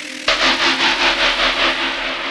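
Yamaha FB-01 FM tone generator playing a noisy effect patch that starts about a quarter second in and pulses about seven times a second over a low steady tone, then slowly fades.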